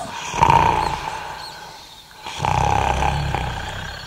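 Sound effect of a giant's loud, deep snoring: two long rasping snores, the first fading out about two seconds in and the second following straight after.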